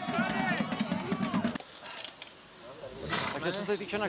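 Men's voices for the first second and a half, then a quieter outdoor stretch in which a horse snorts once, a short breathy burst about three seconds in, before a man starts to speak.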